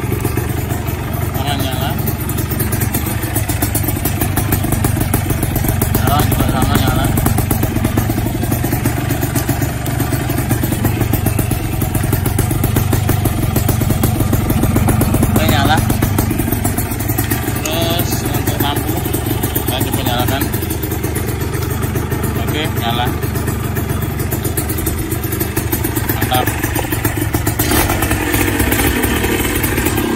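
Suzuki Satria 120 single-cylinder two-stroke engine idling steadily, with a fast, even pulsing and no revving.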